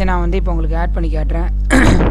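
A person coughs once, sharply, near the end, over a steady low electrical hum.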